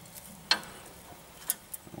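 A few light, sharp clicks of metal parts being handled at a Land Rover's front suspension and brake: one about half a second in, then two smaller ones around one and a half seconds.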